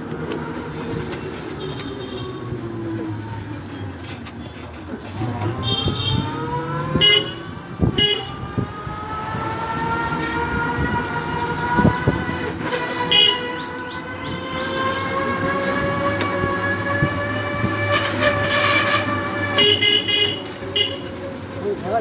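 Motor vehicle engine running and slowly changing speed while moving along a lane, with short horn beeps several times, including a quick cluster near the end.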